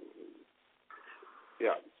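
Telephone-line speech: a drawn-out hummed "uh" hesitation, a short pause, then "yeah" near the end.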